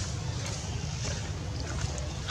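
Wind rumbling steadily on the microphone, with a faint hiss and a few faint short high ticks over it.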